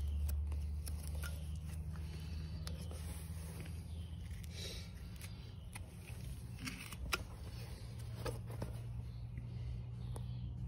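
A low steady hum with a few faint, short scrapes and clicks from a hoof knife and hands working the sole of a horse's abscessed heel.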